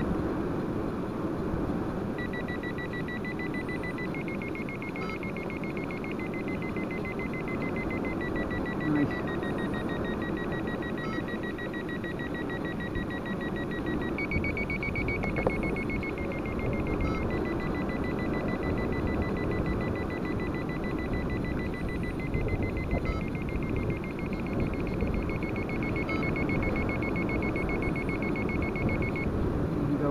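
Rapidly pulsed electronic beeping tone that steps up and down in pitch every few seconds, typical of an RC glider's audio variometer reporting climb and sink while it circles in a thermal. Wind rushes on the microphone underneath, and the tone stops shortly before the end.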